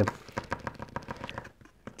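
Paint marker being primed to get the ink flowing: a fast, irregular run of small clicks and rattles.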